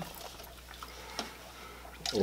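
Juice being poured from a large plastic bottle into a plastic cup: a faint trickle, with a small tick about a second in.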